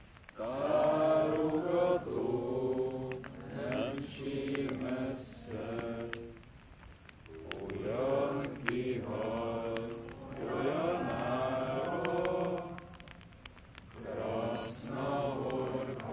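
A group of people singing a song together in unison, unaccompanied, in long held phrases with two short breaks between lines.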